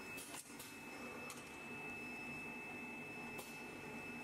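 Screen printing machine running in a workshop: a steady high-pitched whine under a low hum, with four sharp clicks, three in the first second and a half and one near the end.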